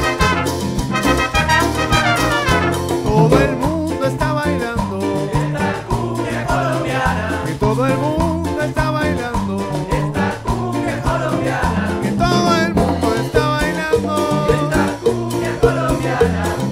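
Colombian cumbia played by a tropical dance orchestra: brass lines from trumpets, trombone and saxophones over bass, drum kit and hand percussion with maracas, on a steady dance beat.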